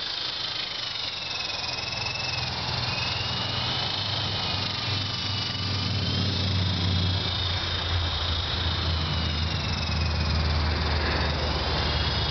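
E-Sky Big Lama coaxial RC helicopter in flight: a thin, high motor whine that wavers up and down in pitch as the throttle changes. Under it runs a low hum that grows louder about halfway through.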